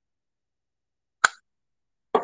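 A single sharp click about a second in, from a clear-lidded plastic blush compact being handled.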